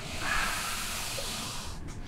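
Air hissing through the gap as the door of a sealed, airtight plywood room is pulled open. The hiss holds steady for about a second and a half, then fades away.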